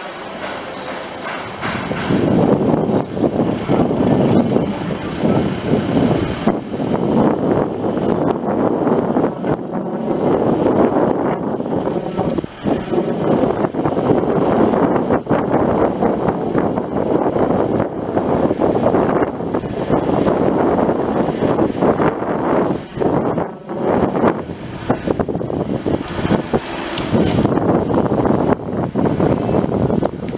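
Loud, uneven rushing noise of a car on the move, heard from inside the cabin: road and engine noise with wind on the microphone. It rises sharply about two seconds in and dips briefly now and then.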